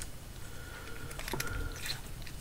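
Faint handling of a LAMY dialog cc fountain pen: a few soft clicks and light rubbing as the barrel and its parts are turned in the fingers.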